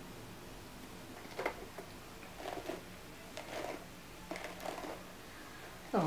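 Denman paddle brush drawn through a section of curly natural hair: four soft brushing swishes, about one a second, starting after a quiet first second.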